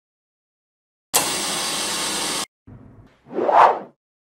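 Logo-intro sound effects. About a second in comes a steady hiss of noise that cuts off abruptly after more than a second, then a fainter hiss and a whoosh that swells and fades near the end.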